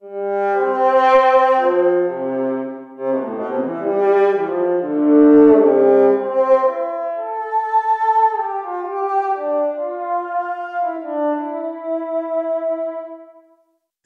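Surge XT synthesized bowed-string patch (a pulse wave through a lowpass filter), its EQ body resonance set at 400 Hz to imitate a viola, played as a phrase of sustained, sometimes overlapping notes that climb higher in the second half and stop just before the end.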